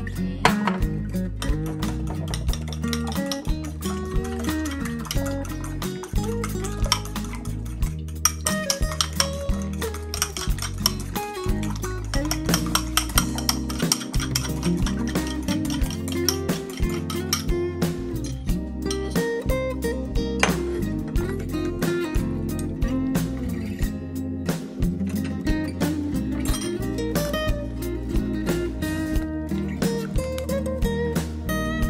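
Background music with a steady beat, over light clinking of a fork and whisk against ceramic bowls as eggs are beaten into a cake batter.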